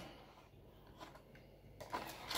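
Near silence: faint room tone with one small tick about a second in.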